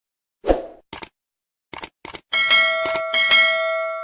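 Subscribe-button animation sound effects: a thump, three quick double mouse clicks, then a notification bell dinging several times, its ringing fading out near the end.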